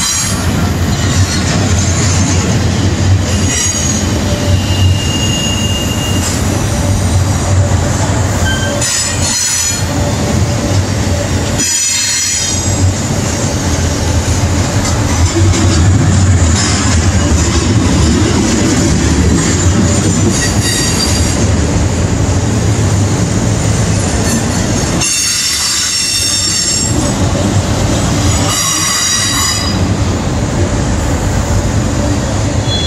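Double-stack container train of well cars rolling past at close range: a steady, loud rumble of steel wheels on the rails. High-pitched wheel squeal breaks in a few times in short bursts.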